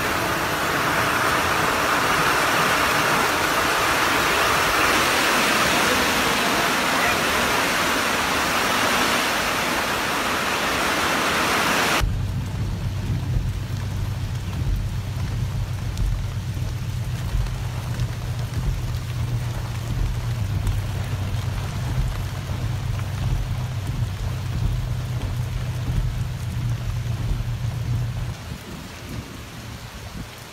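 Heavy rain pouring down steadily as a dense, loud hiss. About twelve seconds in it cuts off abruptly. From there a quieter scene has a steady low hum with faint rain noise over it.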